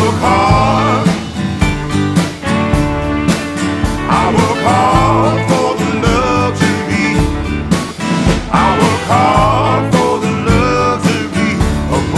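Blues-rock band music with drums, bass and guitar, playing a passage without lyrics. A lead melody bends up and down in pitch in phrases that come about every four seconds.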